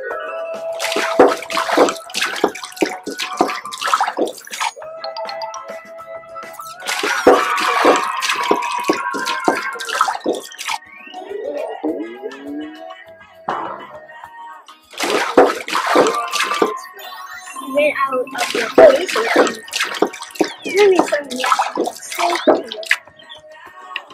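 Hydrogen peroxide poured from a plastic bottle into empty glass carafes, splashing into the glass in four separate pours, over background music.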